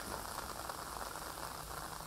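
Rain falling steadily, an even hiss.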